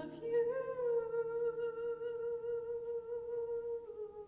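A singer holding one long, steady note, with faint accompaniment underneath.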